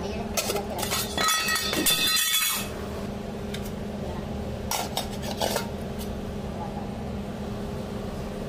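Metal kitchenware clattering and clinking against stainless steel: a burst of ringing clanks in the first few seconds and a shorter one about five seconds in. Under it runs a steady hum of kitchen equipment.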